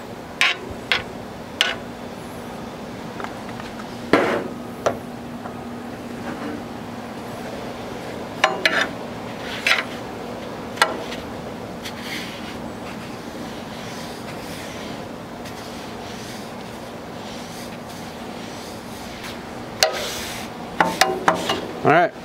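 Metal tongs and spoon scraping and clicking on a hot rolled-steel griddle top as seasoning paste is spread across it with a towel, over a steady background hiss with a faint hum. The scrapes and clicks come in scattered bursts and bunch up near the end.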